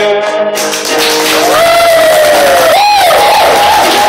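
Live male vocal with acoustic guitar accompaniment: a long held sung note at the start. From about half a second in, a loud noisy wash of audience sound builds under further sliding, wavering vocal notes.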